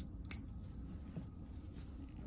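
A single sharp snip of steel nail nippers cutting through a great toenail plate, about a third of a second in, with a fainter click a second later, over a low steady hum.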